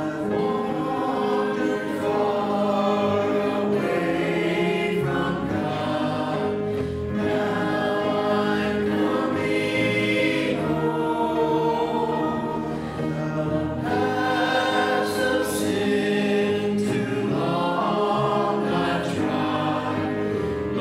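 A small worship team of men's and women's voices singing a hymn together in long held notes, with instrumental accompaniment.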